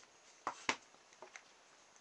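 Two light knocks close together about half a second in, then a couple of fainter ticks: a plywood wheel being set down on a stack of wooden wheels on a wooden desk.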